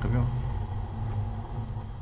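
A machine running with a steady low hum.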